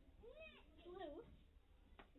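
Two faint, short meow-like calls, each rising and then falling in pitch, about half a second apart.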